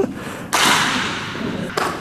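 A thud, then a noisy rush that starts suddenly about half a second in and fades over about a second, with another short hit near the end.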